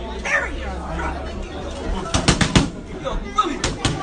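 Boxing gloves smacking focus mitts: a fast combination of four punches about two seconds in, then two more near the end.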